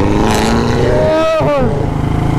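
BMW sedan with an Armytrix aftermarket exhaust accelerating. Its engine note climbs steadily, then drops briefly about a second and a half in, as at a gear change. Underneath runs the steady low beat of the Royal Enfield Bullet 350's single-cylinder engine.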